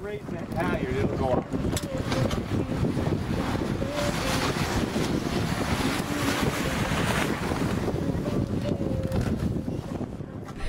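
Steady wind noise buffeting the microphone aboard a sailboat under way, with the wash of water along the hull. Faint voices come through in the first second or so.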